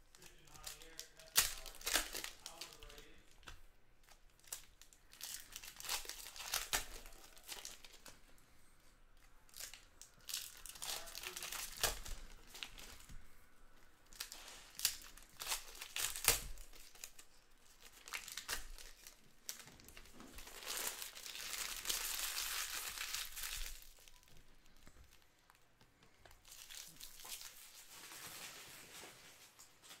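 Foil trading-card pack wrappers being torn open and crinkled by hand, in repeated bursts of rustling and crackling; the longest stretch of crinkling comes about two-thirds of the way through.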